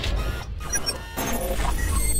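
Cinematic logo-reveal sound effects: a deep bass rumble under sweeping whooshes and glitchy electronic blips, settling into a low drone near the end.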